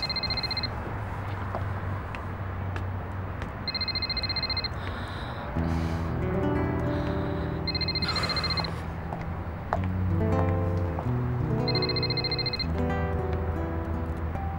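A mobile phone ringing: four short, high, trilling electronic rings of about a second each, roughly four seconds apart. Soft background music with low held chords plays underneath.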